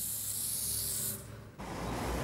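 Aerosol spray can hissing steadily, stopping a little over a second in. It is followed near the end by a low street-traffic rumble.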